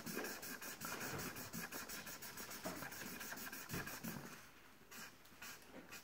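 Felt-tip marker scribbling on paper in quick back-and-forth colouring strokes, several a second, fading out near the end.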